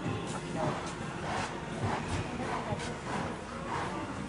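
Indistinct background voices with faint music, over the soft repeated thuds of a horse's hooves cantering on sand arena footing.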